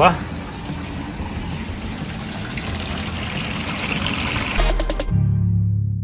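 Washing machine draining its cleaning water: a steady rush of water flowing out, growing slightly louder. About five seconds in it cuts to a short, low, sustained musical tone.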